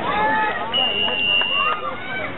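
Spectators talking at poolside. A single steady high-pitched tone sounds through the voices for about a second, starting shortly after the start.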